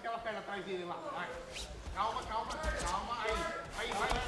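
Men's voices talking over the arena, with dull low thuds from about halfway through.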